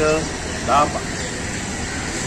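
A motor vehicle engine idling steadily in the background.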